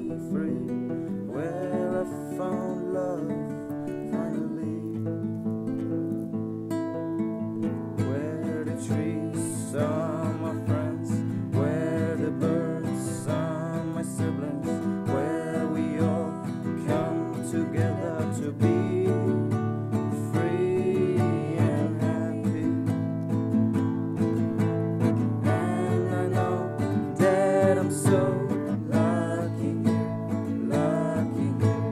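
Music: a song carried by strummed acoustic guitar.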